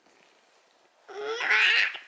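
A young child laughing briefly, a loud high-pitched burst that starts about a second in.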